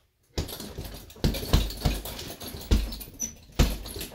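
Bare-knuckle punches landing on a heavy punching bag, about five hard hits in under three seconds, irregularly spaced. Between the hits the bag's loose top and hanging chain jingle and rattle continuously.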